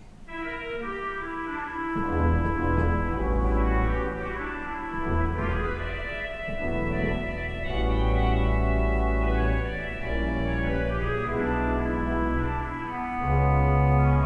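Pipe organ playing smooth jazz chords with a melody on a clarinet reed stop combined with mutation stops on the choir manual. Sustained chords shift every second or two, with deep pedal bass notes entering about two seconds in.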